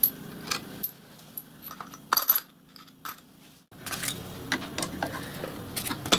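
Steel parts and a spanner clinking and tapping against a bolted steel chassis frame: a string of light metallic clicks, loudest about two seconds in, with a short lull before the clicking picks up again.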